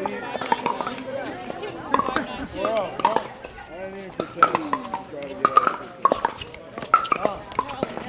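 Pickleball paddles striking the hollow plastic ball during a rally: a string of sharp clacks at uneven intervals, the loudest about halfway through, with voices talking in the background.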